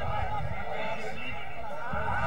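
Several voices calling and shouting indistinctly across an open football ground, many short overlapping calls, over a steady low wind rumble on the microphone.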